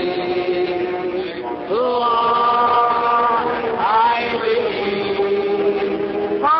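Congregation singing a slow hymn chorus with the band, in long held notes that move to a new pitch about every two seconds. It is on an old recording with a muffled, narrow sound.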